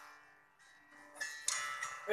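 Guitar accompaniment between sung lines: a chord dies away quietly, then soft strums start again past the middle.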